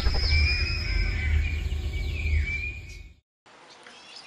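Logo-intro music and sound effects: a heavy deep bass with high shimmering and falling tones, fading out about three seconds in. Faint outdoor background follows.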